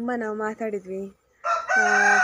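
A rooster crowing: one long, loud call that starts about one and a half seconds in, over a woman talking.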